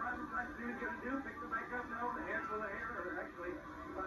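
Indistinct voices and arena crowd noise from a wrestling broadcast, played back through a television speaker and picked up by the room microphone.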